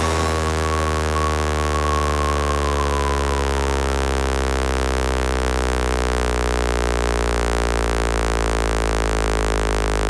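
Electronic bass house music in a breakdown: a held, droning synthesizer bass note with no drums, its overtones slowly sliding. A thin high tone fades out over the first few seconds.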